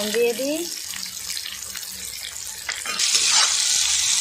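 Sliced onions sizzling in hot oil in a wok while a steel spatula scrapes and stirs them; the sizzle steps up and stays louder from about three seconds in.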